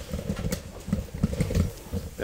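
Low, muffled murmur of a voice, heard as irregular soft low pulses with a few faint clicks.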